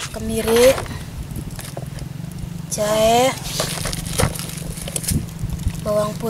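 A person's voice in a few short syllables, with light clicks of peeled garlic pieces being dropped into a clay mortar, over a steady low hum.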